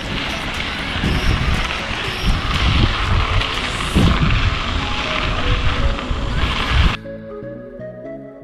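Heavy wind rumble on the microphone of a camera carried on a moving mountain bike over a rough dirt road, with background music underneath. About seven seconds in the noise cuts off suddenly and only the music remains.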